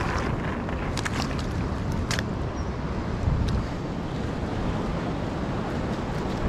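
Wind buffeting the microphone over the steady wash of surf, with a few short clicks about one and two seconds in.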